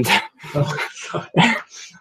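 Laughter coming over a video call, in a few short, irregular breathy bursts.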